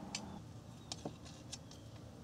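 Three faint, sharp metallic clicks as hex nuts are spun by hand onto the blade bolts of a mower blade assembly, over a faint steady low drone.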